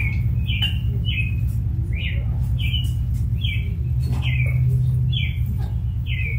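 A bird calling over and over with short, falling chirps, about two a second, above a steady low hum.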